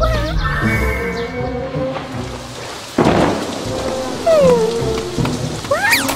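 Cartoon thunder sound effect: a sudden clap of thunder about halfway through that fades out, followed by rain hiss, over light background music. A falling, sliding tone follows a second or so after the thunder.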